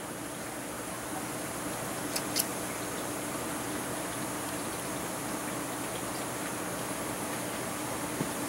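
Two faint quick snips of small thread nippers cutting a piece of thread, about two seconds in, over a steady room hum and hiss.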